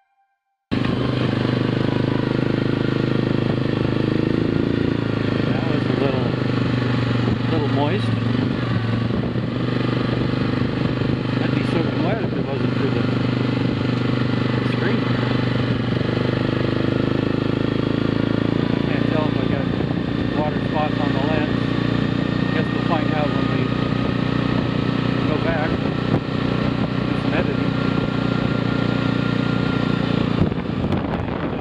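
ATV engine running steadily as the quad rides along a dirt trail; the sound cuts in suddenly less than a second in.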